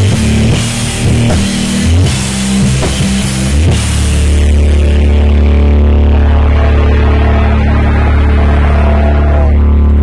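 Live rock band with drum kit, distorted guitar and bass playing hard; about four seconds in the drums stop and a single low bass note is left droning steadily.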